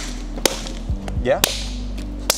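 Open hands slapping a block of 10% ballistics gel: two sharp smacks about a second apart.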